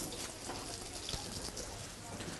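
Salt sprinkled by hand over raw vegetables in a roasting tray: a faint, light patter with a few small ticks.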